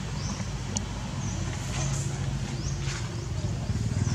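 Steady low motor hum with a few short, high sliding chirps over it.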